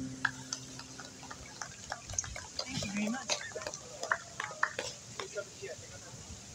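Sparse, irregular applause from a small audience, a handful of people clapping, with a short voice about halfway through.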